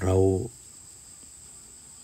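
A steady, faint, high-pitched insect trill, typical of crickets, runs through a pause in speech; a single spoken word sits at the very start.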